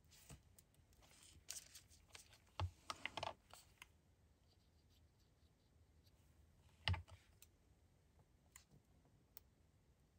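Quiet handling of small paper pieces: faint rustles and small clicks as paper scraps are moved and pressed onto a card strip, busiest in the first four seconds, with one sharp click about seven seconds in.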